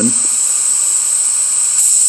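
Compressed air hissing loudly and steadily out of the partly opened drain valve under an air compressor tank holding about 75 psi, as the tank is bled to drain condensation. The hiss starts suddenly as the valve cracks open.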